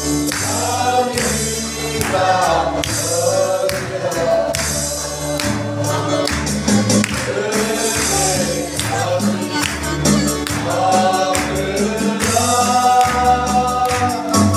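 Mixed choir of men and women singing a gospel hymn together over a musical accompaniment with a held bass line and a regular high, hissy percussion beat.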